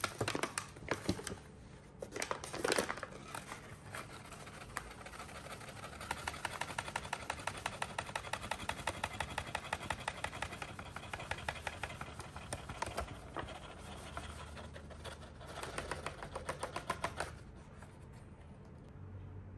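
Parchment paper crackling as it is gathered up, then a rapid, even run of light taps, about five a second, as the paper is shaken and tapped to pour sifted flour and cocoa powder into a glass bowl.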